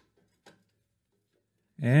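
Near silence with a faint click about half a second in, then a man's voice starting near the end.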